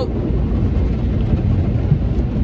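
Automatic car wash working over the car, heard from inside the cabin: a steady, loud low rumble of water and wash equipment against the body.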